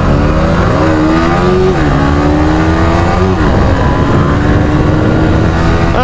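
Yamaha R15 V3's 155 cc single-cylinder engine accelerating hard, its pitch climbing and falling sharply at two upshifts (about two seconds in and just after three seconds), then rising slowly again in the higher gear.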